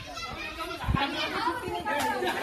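Children talking and calling out together while playing, with a low thump about a second in.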